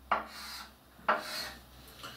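Chalk writing on a blackboard: two scratchy strokes, each starting with a sharp tap of the chalk, one at the start and one about a second in.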